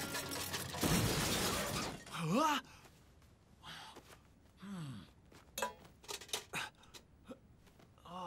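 A crash and clatter of metal armour for about two seconds, then two short voiced exclamations and a few light metallic clinks.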